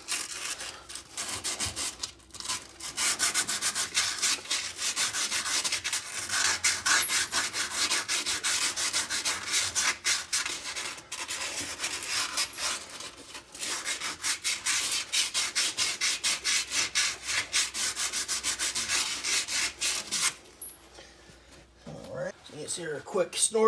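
Sandpaper worked by hand inside the steel upper control-arm bushing bore of a Ford 8.8 rear axle housing, cleaning it out after the old bushing was cut out. It goes in quick, even back-and-forth scraping strokes, with two brief pauses, and stops about two seconds before the end.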